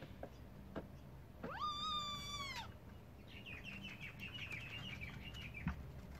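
A trapped kitten gives one long, high meow about a second and a half in: it rises sharply, holds and falls away. A quick run of high chirping notes follows in the second half.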